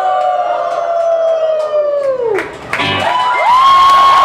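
A long held sung note, a howl, slides down and breaks off about two and a half seconds in over strummed acoustic guitars; a second howl then rises and is held high as the crowd cheers.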